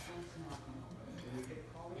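Faint voices in the background over a low steady hum; no clear handling sounds.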